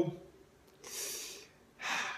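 A man's breaths in a pause between spoken phrases: a breath lasting about half a second around a second in, then a shorter, sharper intake of breath near the end, just before he speaks again.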